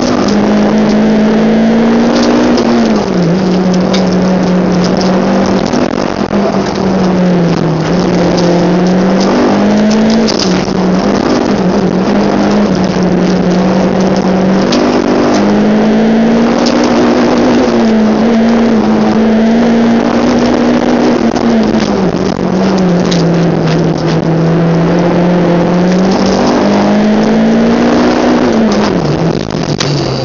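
A Honda Civic's D16Z6 1.6-litre SOHC VTEC four-cylinder heard from inside the cabin, held at high revs through an autocross run, its pitch rising and falling as the driver accelerates and lifts between cones. Near the end the revs drop away sharply.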